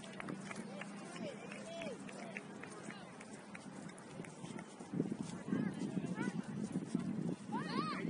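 Distant voices of players and spectators calling and shouting across a soccer field during play, in short rising-and-falling calls. About five seconds in it grows louder and busier.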